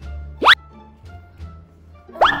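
A cartoon-style sound effect, a single very fast upward whistle swoop about half a second in, over soft background music.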